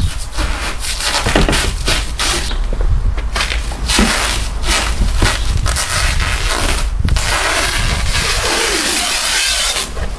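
Clear plastic wrap film being pulled off its roll and stretched over a car's body, crackling and rustling in irregular bursts, with a longer continuous rasp in the last few seconds.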